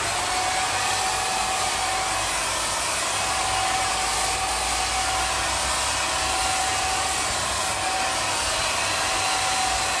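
Parkside PFS 450 B1 HVLP electric paint sprayer running steadily while spraying paint onto a wall: the 450 W turbine blower's airy rush with a steady whine above it.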